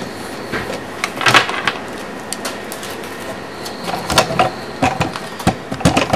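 Plastic drink bottles taped into a measuring device, handled and turned: a few light knocks and crinkles over a steady background hiss.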